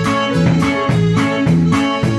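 Norteño band playing an instrumental passage without singing: button accordion, twelve-string guitar, electric bass and drum kit, with cymbal hits about four times a second.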